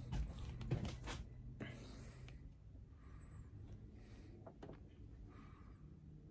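A few faint clicks and handling sounds in the first two seconds as a Keurig coffee maker is switched on by hand, then only a faint low hum and soft rustling.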